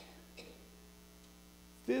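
Steady, low electrical mains hum in a pause in speech, with a couple of faint short sounds near the start. A man's voice begins just before the end.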